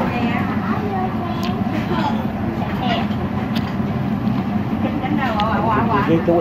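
Busy noodle-shop din: background chatter of other people over a steady low hum of street traffic, with a few sharp clinks of chopsticks against the bowl.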